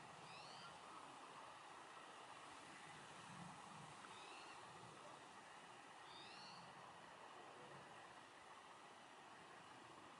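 Near silence, with faint wild bird calls: three short rising chirps, one near the start, one about four seconds in and one about six seconds in, and a few faint low hoots in the middle.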